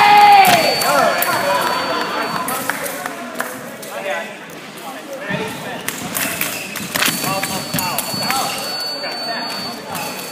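A loud shout, falling in pitch, right at the start, then scattered thuds of fencing footwork on the piste and short bursts of voices in a large echoing hall. A faint steady high tone sounds near the start and again toward the end.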